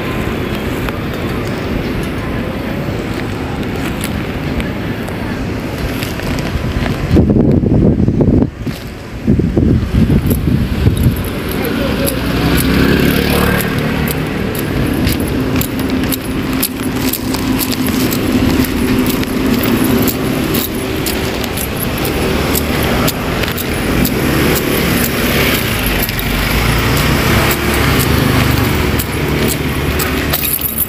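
City road traffic and engine noise while moving along a street, with heavy wind buffeting on the microphone about seven to nine seconds in and a steady engine hum through the second half.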